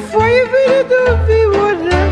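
Romanian lăutari party music: a heavily ornamented lead melody that wavers and slides in pitch, played over a bass line of repeated low notes.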